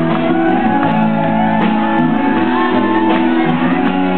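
Live rock band playing, with an acoustic twelve-string guitar strummed over sustained chords.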